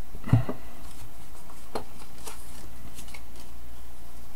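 Trading cards and plastic binder pages being handled: a knock near the start, then a few light clicks, over a steady low hum.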